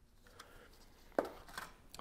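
Faint handling of a cardboard box and paper packaging, with one sharp click a little over a second in.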